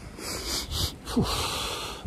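A man smelling a rose: a long sniff in through the nose, then a breathy "whew" as he breathes out.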